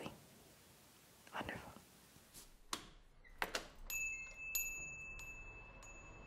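Two light clicks, then a small bell chime struck several times and left ringing on a steady high tone.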